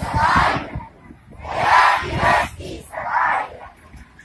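Many schoolboys shouting together in unison, in three loud bursts of about a second each with short gaps between, like a group chanting slogans.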